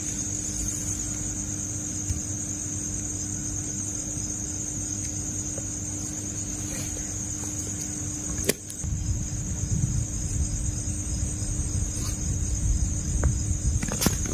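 Crickets chirping in a steady, continuous high trill at night, with a faint low steady hum underneath. About eight and a half seconds in there is a click, after which low rumbling noise joins the insect chorus.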